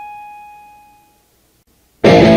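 The final sustained electric guitar note of a hardcore punk song ringing out and fading away, gone just over a second in, leaving near silence before the next song.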